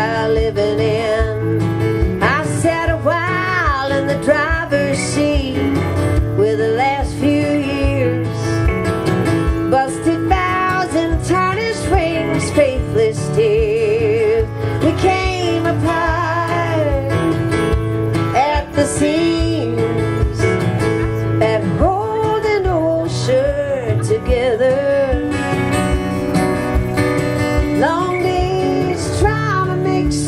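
Live folk-country song played on an acoustic guitar and an electric guitar, the electric guitar playing lead lines with notes that bend and waver over the steady acoustic strumming.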